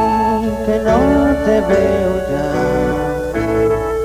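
Grupero band playing a slow ballad live: sustained melody notes with a few sliding pitches over a steady bass line.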